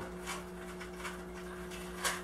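Faint scratchy rustles of fingers working an azalea's roots into gritty pumice-and-lava-rock bonsai soil in a plastic pot, over a steady low electrical hum.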